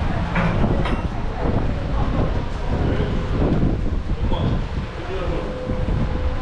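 Wind buffeting the microphone in a steady, low rumble, with indistinct voices faintly behind it.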